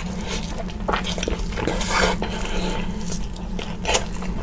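Close-miked wet chewing and smacking of rotisserie chicken, with irregular squelchy bites, the loudest about halfway through and just before the end.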